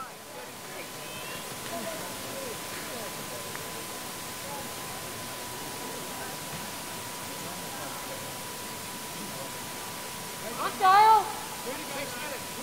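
Open-air athletics stadium ambience: a steady hiss with faint distant voices and a thin, steady high tone underneath. About eleven seconds in, a single loud, short call from a voice.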